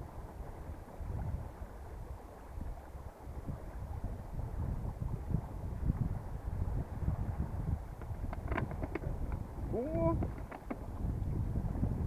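Wind buffeting the microphone with a steady low rumble on a small sailboat under way. Near the end come a few short clicks of plastic water bottles being handled, and a brief rising voice sound.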